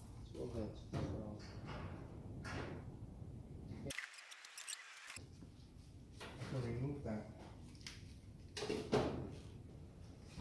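Low, indistinct man's speech in short bursts, with a few knocks as wood is handled; the sound drops out briefly about four seconds in.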